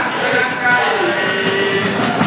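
Crowd of football supporters singing a chant together, many voices at once.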